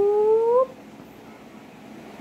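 A person's voice holding a drawn-out note that rises steadily in pitch and breaks off about half a second in, followed by quiet room tone.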